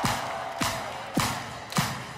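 Bass-boosted drum beat: a kick drum with a clap on every beat, just under two beats a second, starting a song.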